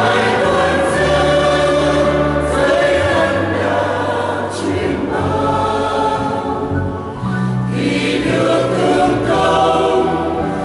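Mixed choir of women's and men's voices singing a Vietnamese Catholic hymn in parts, with a short break between phrases about seven seconds in.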